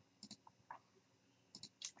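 Several faint computer mouse clicks, scattered and irregular, against near silence.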